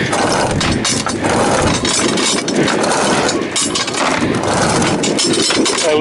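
A sailboat's engine running steadily under heavy wind noise on the microphone.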